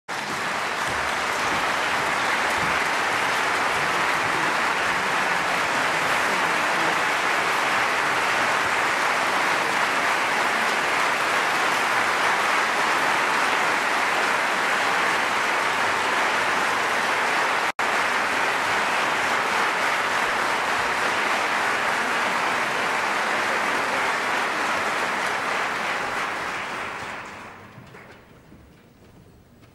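Concert hall audience applauding steadily, cut off for an instant about two-thirds of the way in, then dying away near the end.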